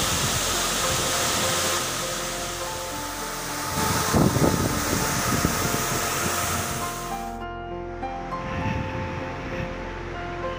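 Waterfall roar, a dense steady rush of falling water, under background music with sustained melody notes. The water noise cuts off abruptly about seven seconds in, leaving only the music.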